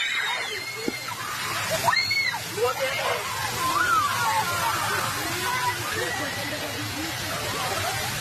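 Agitated shouting and screaming of children and adults around a burning bus, with high screams about two seconds in, over a steady rushing noise.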